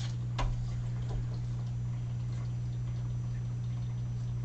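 A sharp click about half a second in, then a faint tick, as hands handle a paper sheet and an alcohol marker, over a steady low hum.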